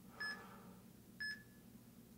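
Workout interval timer counting down the last seconds of an exercise set: two short, high electronic beeps about a second apart.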